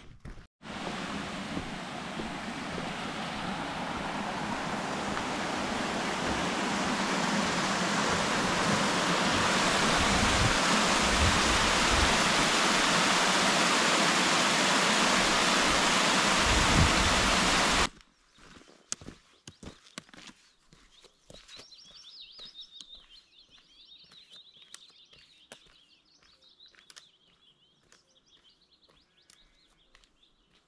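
Small mountain waterfall rushing over rocks, a steady noise that grows louder and then cuts off abruptly a little past halfway. After it, much quieter, with birds chirping and faint footsteps.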